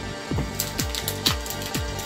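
Background music with a steady beat of about three low drum hits a second, with a few light clicks from a stack of trading cards being handled.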